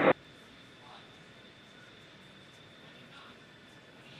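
Faint steady hiss with a thin, steady high-pitched tone, and faint murmurs of voice about a second in and again near the end.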